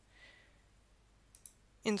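Two quick computer mouse clicks, a double-click, about a second and a half in, with a soft intake of breath just before them.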